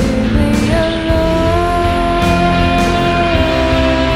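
Loud rock music led by an electric guitar, with drums and bass; one long note is held from just under a second in until near the end.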